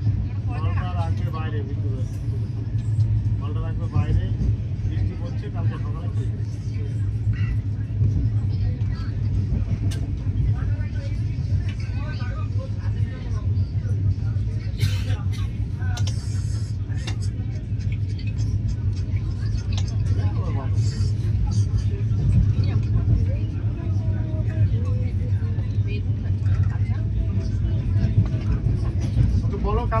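Steady low rumble of a moving LHB passenger coach, its wheels running on the track, heard from inside the coach. Faint passenger voices come and go, and a few sharp clicks sound about halfway through.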